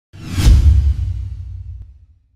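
Logo-reveal sound effect: a whoosh sweeping up into a deep boom, whose low rumble fades away over about a second and a half.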